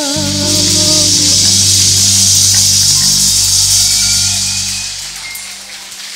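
Ending of a sung ballad: the singer's last held note, with vibrato, stops right at the start, and the backing track's final chord sustains and then fades out over the last second or two. A loud wash of audience applause comes up over it about half a second in.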